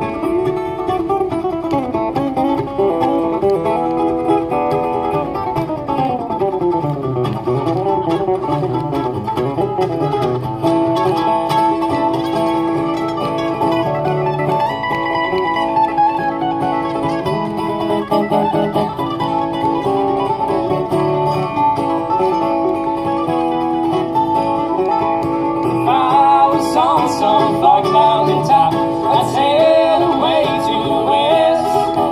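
Live bluegrass played on mandolin and acoustic guitar, picked and strummed together at a steady, bright level, growing a little louder about four seconds from the end.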